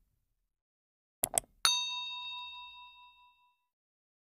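Two quick mouse-click sound effects, then a bright bell ding from a subscribe-button animation, ringing out with several tones and fading over about two seconds.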